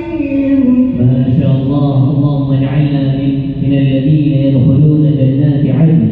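Male voice reciting the Quran in tarteel style, drawing out long held notes with slow melodic wavering. The pitch slides down near the start, then the voice settles onto a long sustained lower tone.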